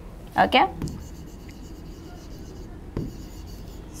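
A marker writing on a board: faint scratching strokes with a few small ticks.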